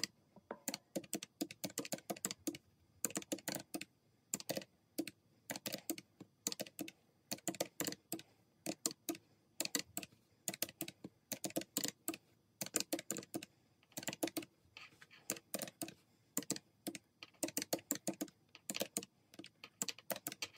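Keys of a plastic desktop calculator being pressed in quick, irregular clusters of clicks with long-nailed fingertips, as a column of bill amounts is keyed in and totalled.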